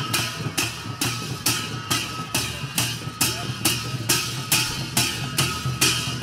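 Sakela dance music: a dhol barrel drum beats a steady rhythm, with a bright, ringing stroke about twice a second, most likely jhyamta brass cymbals.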